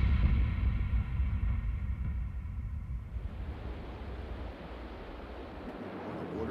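Ocean surf washing on a beach, with a heavy low rumble of wind on the microphone. It is loud at first and eases over a few seconds into a steady, quieter wash.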